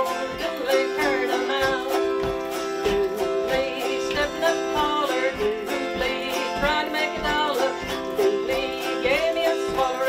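Autoharp strummed in a steady rhythm, with a woman singing an old-time country song over it.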